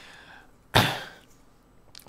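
One short, sharp cough from a man about a second in, starting suddenly and fading within half a second.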